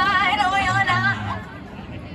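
A voice with a strongly wavering pitch over music with low bass notes, dying down about two-thirds of the way in.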